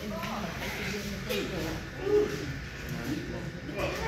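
Low, indistinct voices talking in the background, much quieter than the shouted coaching around them.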